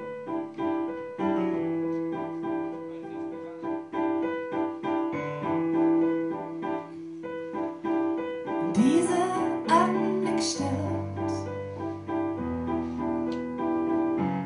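Live keyboard music: an electric-piano-like keyboard plays a repeating chord pattern. About nine seconds in, a woman's voice slides in with a sung phrase along with bright splashy hits, and deeper held bass notes follow.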